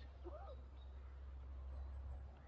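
Quiet, still lakeside morning: a low steady rumble under a few faint, distant bird calls, one short rising-and-falling call early on.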